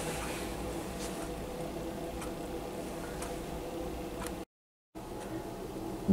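Faint steady hiss and low hum of a running lab distillation setup, with a few light ticks. The sound cuts out completely for about half a second near the end.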